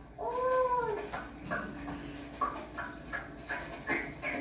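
A child's drawn-out, meow-like call that rises and falls in pitch, ending about a second in, followed by shorter, quieter vocal sounds, heard through a TV speaker.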